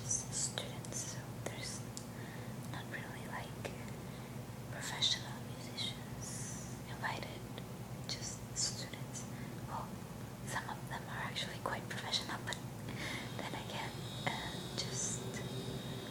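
A woman whispering close to the microphone, a continuous breathy ramble of hushed syllables, over a steady low hum.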